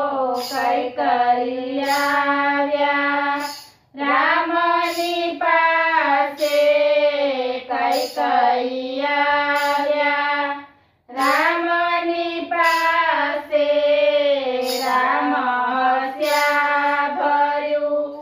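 Women's voices singing a Gujarati Ram bhajan together. The song breaks off briefly twice, about four seconds in and again about eleven seconds in.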